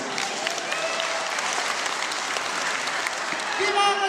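Audience and people on stage applauding, steady clapping, with a voice calling out over it near the end.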